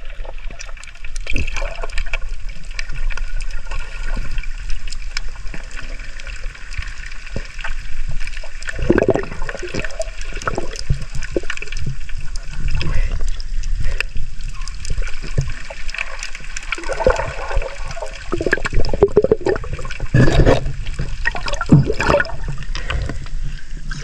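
Water sloshing and churning around a camera held underwater in the sea, heard muffled, with many scattered clicks and knocks and irregular louder surges.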